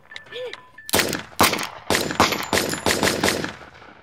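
Rapid volley of pistol shots, many in quick succession, starting about a second in and dying away near the end.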